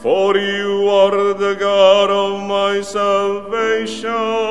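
A male cantor sings the responsorial psalm with vibrato, with piano accompaniment. A new sung phrase begins right at the start with a short upward slide.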